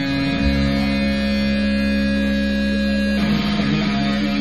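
Live metal band's distorted electric guitars holding sustained chords over a deep bass drone, the chord changing about three seconds in.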